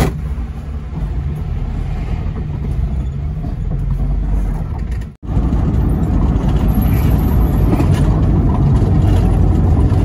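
Taxi engine running and road noise heard from inside the cabin of the moving car, steady. A brief dropout about five seconds in, after which the road noise is denser and a little louder.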